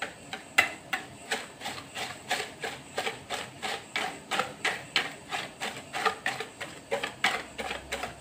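Wire balloon whisk beating eggs and sugar in a plastic bowl, the wires clicking against the bowl in a steady rhythm of about three strokes a second.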